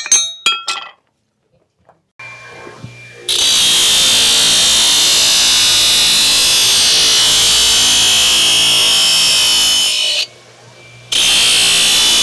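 A few ringing hammer strikes on steel at the anvil in the first second. About two seconds in a belt grinder's motor starts, and just after three seconds a steel horseshoe is pressed to the running belt, grinding loudly and steadily; near ten seconds the shoe comes off the belt for about a second and the grinding then resumes.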